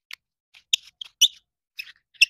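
Short, high-pitched squeaks and clicks, about four spread over two seconds, as the tail cap of a SIG Sauer Foxtrot MSR weapon light is twisted onto its body.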